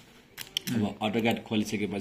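A few sharp clicks from the laptop in the first half second, then a man talking.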